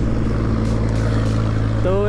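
Motorcycle engine running steadily at cruising speed, a low even drone, with road and wind noise over it.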